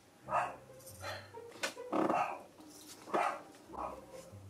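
A dog barking: several short barks, roughly a second apart.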